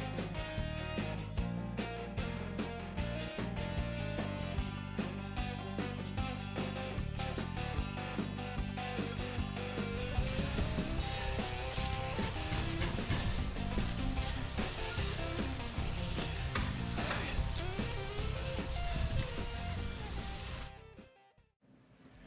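Water from a garden-hose spray nozzle hissing onto a concrete slab, starting about halfway through and laid over background music. Both cut out about a second before the end.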